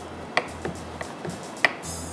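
Chef's knife chopping sliced green and black olives on a wooden cutting board: about five irregular knocks of the blade against the board, the sharpest about a third of a second in and near the end.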